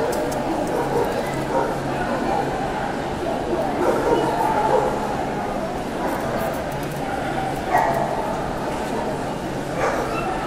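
A dog barking a few times over the steady chatter of a large crowd.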